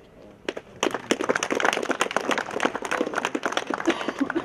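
A group of people applauding, the dense clapping starting about a second in.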